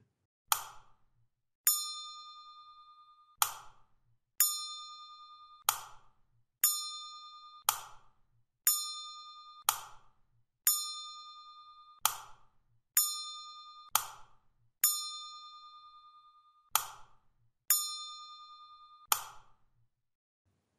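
Short clicks alternating with bell-like electronic dings, roughly one event a second, each ding ringing briefly and dying away, with dead silence between them. They mark the step-by-step key presses as both FIFOs are filled with data.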